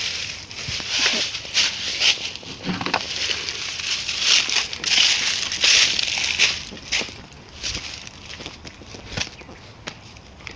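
Footsteps crunching through dry fallen leaves, in repeated crackling bursts that grow fainter over the last few seconds as the ground turns to grass.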